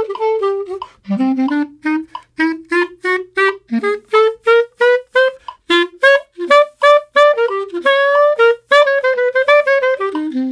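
Clarinet playing a phrase of short, separate notes that climb in pitch, with brief breaks about a second in and past the middle, and a few longer held notes near the end.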